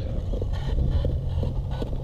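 Wind rumbling on the microphone, with a few faint clicks.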